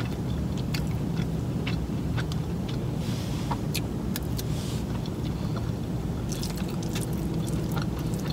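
Close-up eating sounds: a fork scraping and scooping through a Chipotle bowl of rice, chicken, cheese and sour cream, with small clicks and chewing, over a steady low rumble.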